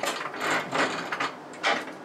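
A ship's steel door being unlatched and opened, with several metallic clunks and knocks in quick succession.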